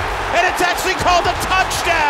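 A television play-by-play announcer's excited voice over the steady noise of a large stadium crowd.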